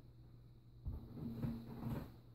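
Feet stepping back onto an exercise mat during reverse lunges with dumbbells: a dull thud about a second in, then softer movement noise, over a low steady hum.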